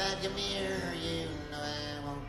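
Harmonica solo in a neck rack over acoustic guitar, a few long held notes that step in pitch.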